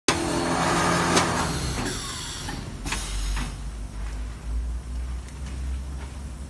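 Automatic premade-bag packing machine running: a loud rushing noise for the first couple of seconds, then a few sharp mechanical clicks over a steady low hum.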